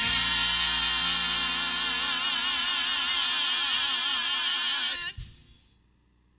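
A gospel vocal ensemble holds a final note with wide vibrato over a sustained accompaniment, and cuts off together about five seconds in.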